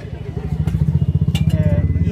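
A small engine running close by with a fast, even throb, growing louder over the first second. Two light clicks of clatter come partway through.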